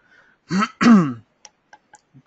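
A man clears his throat: two short voiced rasps falling in pitch, about half a second to a second in. A few faint clicks follow near the end.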